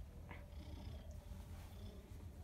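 Domestic cat purring steadily as it is petted under the chin, a faint low rumble.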